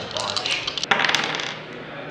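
Two ten-sided dice rolling and clattering on a wooden tabletop, a quick run of sharp clicks with the loudest knock about a second in, then settling.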